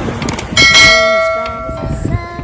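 Bell-ding sound effect, the notification cue of a subscribe-button animation, preceded by a few quick mouse-click sounds. The ding rings about half a second in and fades away over a second and a half.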